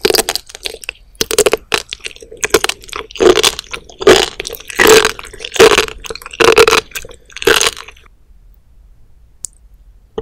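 Close-miked chewing of raw seafood (sea cucumber, spoon worm, sea squirt and sea grapes), a series of wet, crunchy bites about once a second. The chewing stops about eight seconds in.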